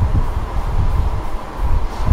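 Wind rushing over the microphone in an open-top Ford Mustang convertible at about 60 km/h, over the low rumble of its 4.0-litre V6 engine and the road.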